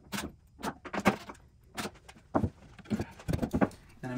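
Scattered, irregular knocks and clicks of plywood panels and a cordless drill being handled on a wooden workbench during box assembly, with no drill motor running.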